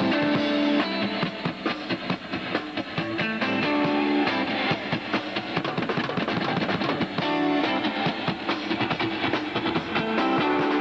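Live rock band playing: electric guitar notes over a drum kit beat.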